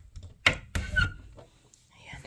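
A door being opened: a sharp latch click about half a second in, followed by a couple of softer knocks and a brief squeak.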